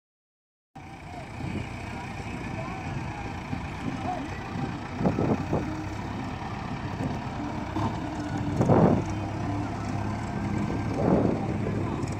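A JCB backhoe loader's diesel engine runs steadily while the machine digs and lifts wet soil, surging louder three times, about five, nine and eleven seconds in.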